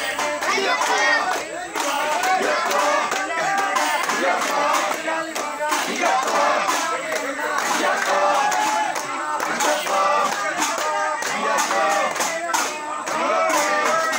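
A crowd of voices singing and calling out together, loud and continuous, with many sharp strikes through it.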